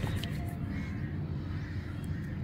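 A bird calling briefly a few times over a steady low background rumble.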